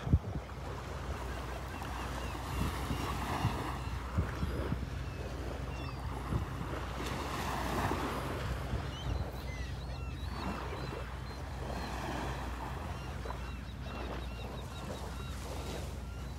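Small Gulf waves lapping and washing onto a shelly beach, the wash swelling and fading every four to five seconds, over a steady low rumble of wind on the microphone.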